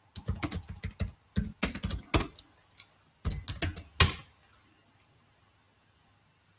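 Keystrokes on a computer keyboard typing out a short command, in two quick bursts with a pause of about a second between them, the last keys struck about four and a half seconds in.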